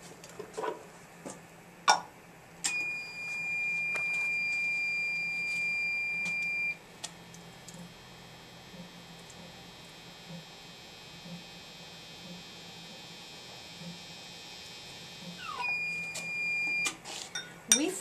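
Hot wire quench-test apparatus beeping: one steady electronic tone lasting about four seconds, then a shorter beep near the end. A sharp click comes just before the first beep.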